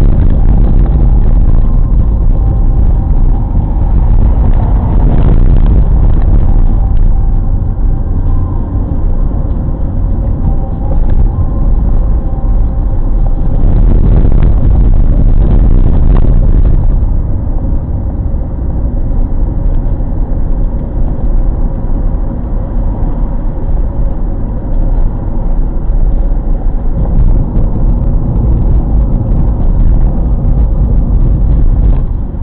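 A car driving, heard from inside the cabin: a loud, steady low rumble of engine and road noise. It swells louder briefly about five seconds in and again for a few seconds around the middle.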